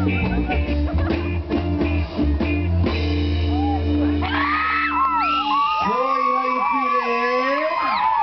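Live reggae band with bass, guitars and drums playing the last bars of a song, stopping about five and a half seconds in. Whoops and cheering from the crowd follow.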